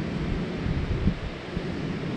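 Wind buffeting the microphone on an open beach, a steady low rumble, with surf behind it.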